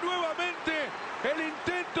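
A football commentator's voice in Spanish, talking quickly and excitedly as he calls a save and the play that follows.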